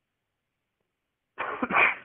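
Near silence, then about a second and a half in, a man's short, explosive burst of breath, sneeze- or cough-like, lasting about half a second.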